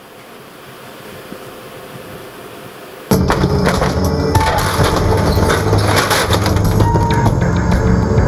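Soundtrack of a Whisper sanitary-pad advertisement played over the hall's speakers. A faint noise swells for about three seconds, then loud rock music with drums comes in suddenly.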